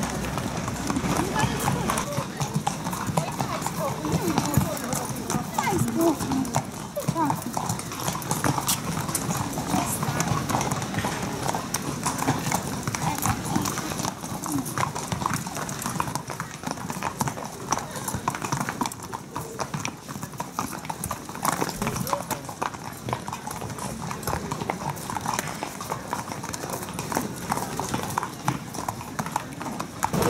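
Racehorses' hooves clip-clopping at a walk on a paved path, many steps one after another, with people talking in the background.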